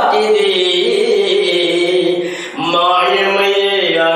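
A man singing a devotional chant-like song unaccompanied, in long drawn-out notes that glide between pitches, with a brief break about halfway through.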